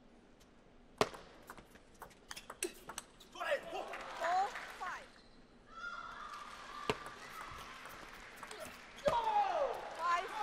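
Table tennis rally: after a quiet moment, the serve's sharp click about a second in, then quick light clicks of the ball off bats and table, with a single hard click near seven seconds and another just before the end.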